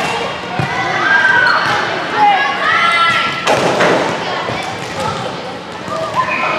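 Girls' voices calling and shouting on a volleyball court, with thuds of the volleyball being hit, echoing in a large gym hall. A short burst of noise comes about three and a half seconds in.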